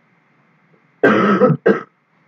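A man coughs twice in quick succession, close to the microphone, about a second in: a longer cough followed by a shorter one.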